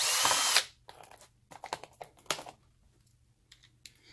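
Cordless drill-driver spinning briefly, for about half a second, as it drives out a screw from a battery module's orange cover. A few light clicks follow.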